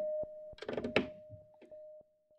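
Behringer Neutron analog synthesizer holding a steady mid-pitched tone, with sharp clicks and a short noisy burst about half a second in as a patch cable is plugged into its patch bay.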